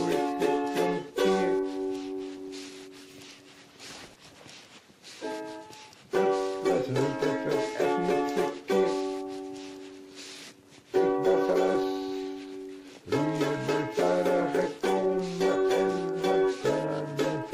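Music of rhythmically strummed chords on a plucked string instrument. Twice the strumming stops and the chords ring on and fade, before the strumming starts up again.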